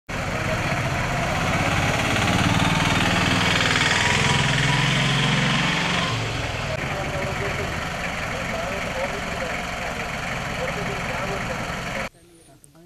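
Toyota SUV's engine idling steadily close by, with people talking over it.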